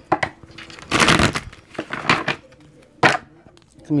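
A deck of oracle cards being handled and drawn: a few short rustling, sliding bursts of card stock, the longest about a second in, and a sharp tap near the end.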